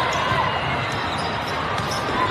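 Volleyball hall ambience: a steady din of many courts, with balls being struck and bounced, faint shoe squeaks on the sport-court floor, and a murmur of voices.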